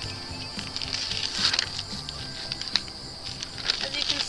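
Background music, with paper masking tape being peeled off a spray-painted coir doormat: a few brief tearing sounds, the clearest about one and a half seconds in.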